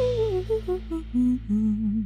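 Theme music from the show's title sequence: a single melody line gliding downward in steps over a held low note, ending on a wavering note.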